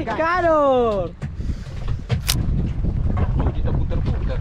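A man's long drawn-out call without words, held and then falling in pitch, ending about a second in, over wind buffeting the microphone on an open boat. A short sharp hiss cuts through about two seconds in.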